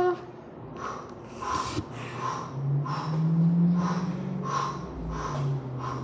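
A person breathing hard after push-ups, short quick breaths about two a second, over a low steady hum.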